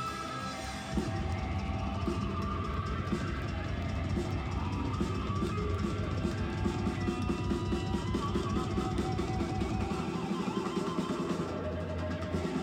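Live rock band playing drum kit and electric guitar, recorded from the audience. The band gets louder about a second in and keeps up a driving beat.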